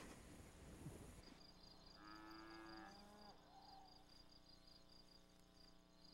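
Faint insects chirping in a fast, even pulse. A cow lows briefly about two seconds in.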